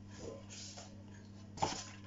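Quiet room with a steady low electrical hum and faint handling noise as a small item is taken from a plastic basket, with one short sharp noise about one and a half seconds in.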